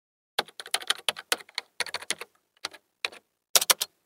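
Typing on a computer keyboard: a run of irregular key clicks starting about half a second in, with a quick burst of louder clicks near the end.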